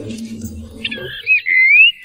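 A comic whistle-like sound effect: a high, warbling squiggle about a second long that ends in a quick rising glide.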